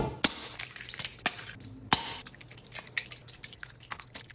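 Raw eggs being cracked one after another against a stainless steel mixing bowl and emptied into it: an uneven run of many short, sharp cracks and taps.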